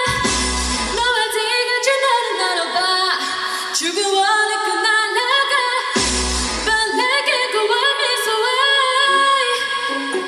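A woman singing a K-pop song over its backing track, with a deep bass hit and a crash at the start and again about six seconds in.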